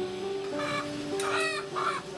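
A live chicken being handled calls out about three times in quick succession, over steady background music.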